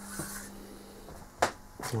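A hand handling the wooden door frame: a short rustle near the start and one sharp click about one and a half seconds in, over a steady low hum.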